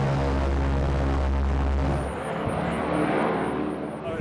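Ford Tri-Motor's radial engines and propellers running with a loud, steady low drone, heard close up from inside the cabin. About halfway through the low hum falls away and the sound becomes quieter and thinner.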